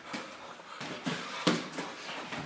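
Boxing sparring: a handful of irregular sharp thuds and slaps from gloved punches and footwork on the ring canvas, the loudest about one and a half seconds in.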